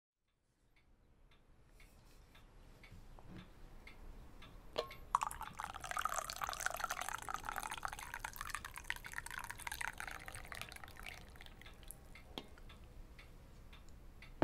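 A click, then liquid pouring with a fine crackling hiss for about six seconds, tailing off near the end.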